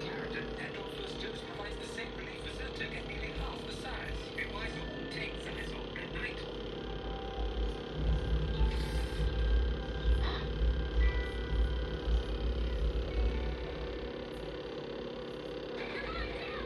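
Faint background voices and music, with a louder low rumble running for several seconds in the middle.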